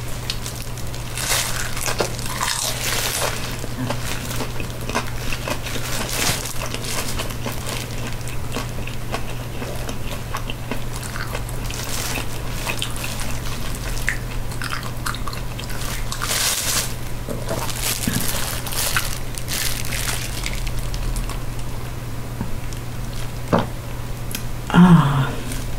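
Close-miked biting and chewing of a crispy fried spring roll, with irregular crunches throughout over a steady low hum.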